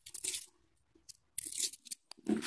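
Two short rustles and scrapes of rolled paper slips being handled and dropped onto a pile on a carpet, one just after the start and one in the second half.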